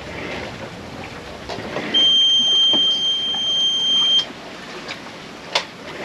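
A boat's engine panel alarm buzzer sounds one steady high-pitched beep for about two seconds, cutting off suddenly, as the auxiliary engine is switched off. Wind and water noise lies underneath, with a couple of faint knocks.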